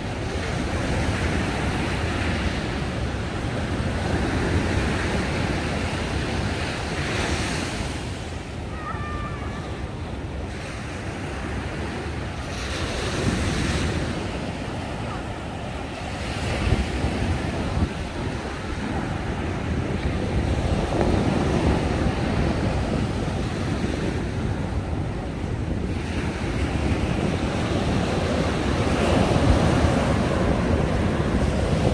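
Sea waves breaking on a sandy beach, the surf swelling and easing every few seconds, with wind rumbling on the microphone.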